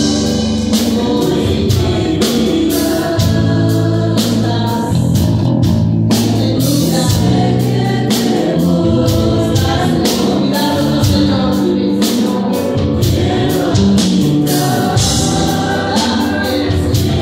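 Live Christian worship band playing: electric bass and drum kit with cymbal crashes under singers' voices.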